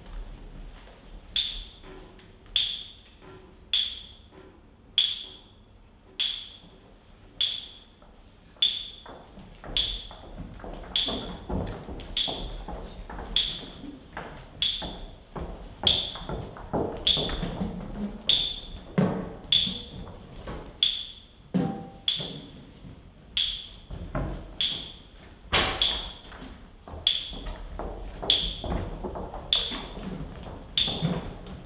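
A steady beat of sharp, ringing clicks, a little more than one a second, with dull knocks of metal buckets being handled and set down on a stage floor between them, getting busier after about ten seconds.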